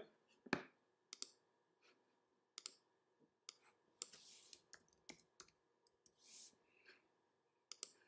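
Faint computer mouse clicks and a short burst of keyboard typing, about a dozen separate clicks spread out, with a quick cluster of key taps about halfway through.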